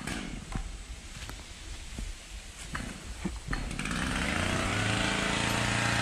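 A few light cracks and rustles, then, a little past halfway, a two-stroke chainsaw comes in and keeps running at a steady, even engine note.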